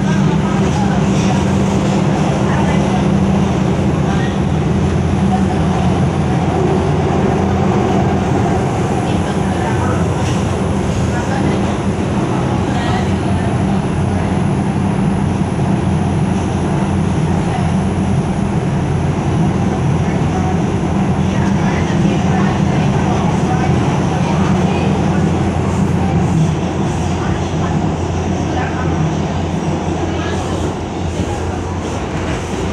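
R142 subway car running between stations: a loud, steady rumble of wheels on rail and traction motors heard from inside the car, a little quieter near the end.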